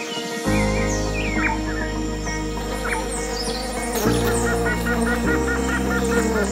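Birds chirping, with a run of rapid repeated chirps in the second half, over background music whose sustained chords come in about half a second in.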